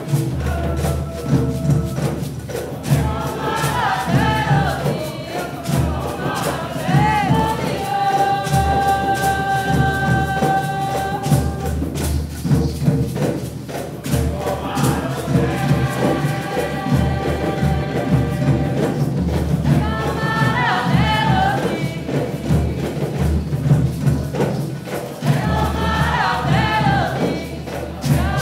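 Several voices singing a Candomblé religious song together over drums and hand percussion keeping a steady rhythm. About a third of the way in, the singers hold one long note for a few seconds.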